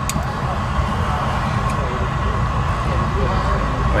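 Steady roar of propane-fired glassblowing burners (furnace and glory hole) with a constant hum at one pitch, and a brief sharp click right at the start.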